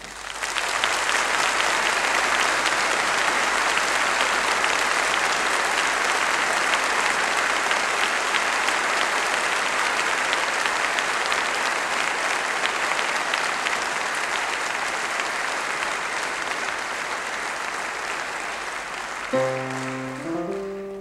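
Audience applauding, starting suddenly as a piano piece ends and tapering slightly; solo piano comes back in about a second before the end.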